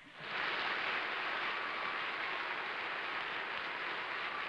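Studio audience applauding: steady clapping that swells up within the first half second and then holds.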